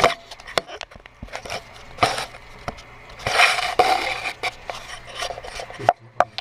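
Scraping and rubbing at the edge of a toilet's flush valve seat to take off a ridge that keeps the flapper from sealing: irregular scrapes and knocks, with longer rasping strokes about two seconds in and again around three and a half seconds in.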